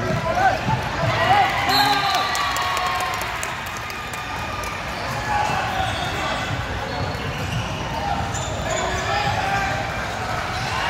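A basketball bouncing on a hardwood court in a large gym, under a steady hubbub of background voices from players and spectators.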